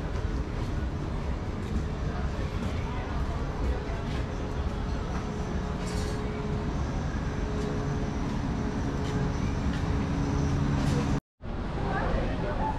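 City alley ambience heard while walking: a steady low hum with the low voices of people nearby, broken by a brief dropout near the end.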